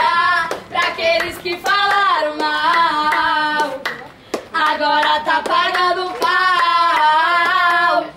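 A girl singing with long, wavering held notes, breaking off briefly about four seconds in, with sharp claps among the notes.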